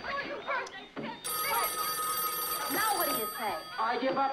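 Telephone ringing: one ring of about two seconds starting about a second in, under voices.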